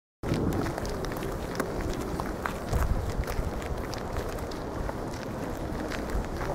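Footsteps and handheld-camera handling noise outdoors, over a steady low rumble on the microphone with a stronger surge about three seconds in. The sound cuts in abruptly just after the start, following silence.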